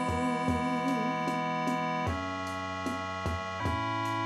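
Suzuki Omnichord OM-84 sounding sustained electronic chords through a small VOX Mini 5 Rhythm amp, over a steady, light ticking beat with occasional low thumps. The chord changes about two seconds in and again shortly before the end.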